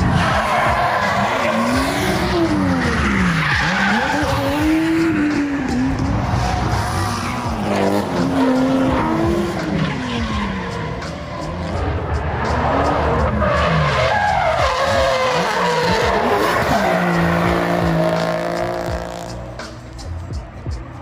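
Drift cars at full throttle, engines revving up and falling back again and again as they slide through the corner, with tyre squeal and skidding noise. Near the end an engine holds a steadier note before the sound fades.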